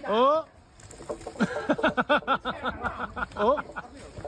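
A person's shout of surprise that slides up and down in pitch, followed by quick, repeated voiced bursts like laughter.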